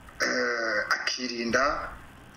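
A man speaking in Kinyarwanda.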